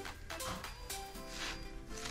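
Quiet background music with a few held notes.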